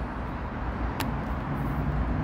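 A single sharp plastic click about a second in: the top vent slider of a GLX GX11 full-face motorcycle helmet being pushed closed. Underneath is a steady low outdoor rumble.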